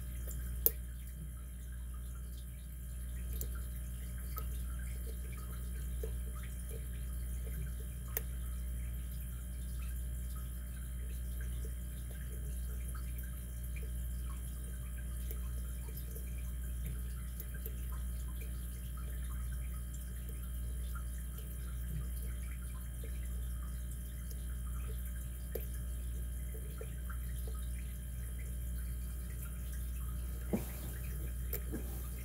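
Faint clicks and scrapes of a lock pick working the pins of a brass pin-tumbler lock cylinder under tension, over a steady low hum. A sharper click comes about a second in and another near eight seconds.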